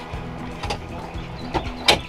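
Background music with a steady low bed, and a few short clicks with one sharp clack near the end as a van captain's chair is reclined: its recline mechanism releasing and the seatback dropping back.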